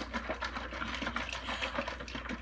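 Handling noise: a steady run of small clicks and rattles, as of objects being moved about on a kitchen counter.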